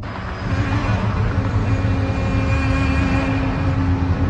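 A vehicle engine running steadily with a deep rumble and a steady hum, cutting in suddenly and growing louder about half a second in.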